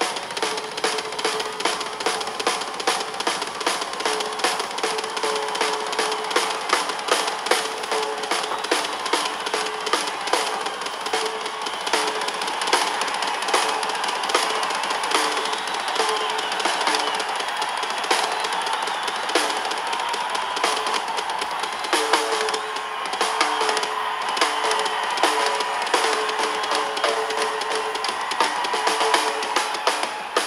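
Live rock drum solo on a full drum kit: a dense, fast run of drum and cymbal hits.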